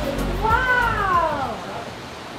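A cat meowing once: one long call that rises briefly, then falls in pitch, as background music fades out.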